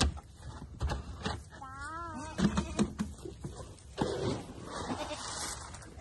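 A goat bleating once with a wavering pitch about two seconds in, amid a few sharp knocks and a rustling hiss later on as the herd crowds the feed tub.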